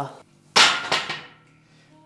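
A single loud knock about half a second in, with a short metallic ring fading after it, as the lifter drops back onto the bench under the racked barbell.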